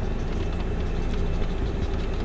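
Steady low rumble of a moving vehicle.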